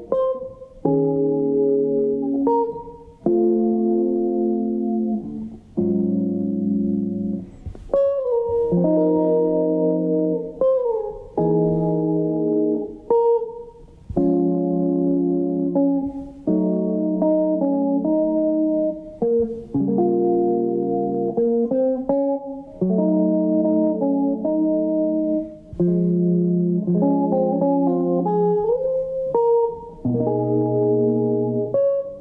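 Semi-hollow electric guitar playing a chord-melody passage in a jazz style: chords struck and left to ring, changing every second or two with short breaks between, with the melody on the top notes and a few sliding notes.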